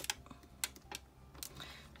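A few faint, light clicks and taps of a clear plastic stamp sheet being handled as a clear stamp is pressed back onto it.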